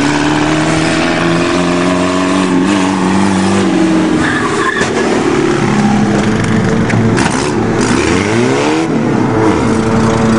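Car engine running under load with its pitch climbing slowly over the first few seconds. Near the end it revs up and down quickly before settling back to a steady note.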